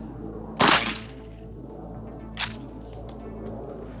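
A single shot from a Mossberg 500 pump-action 12-gauge shotgun firing a rifled slug, a sharp report about half a second in with a brief tail. A much fainter sharp crack follows about two and a half seconds in.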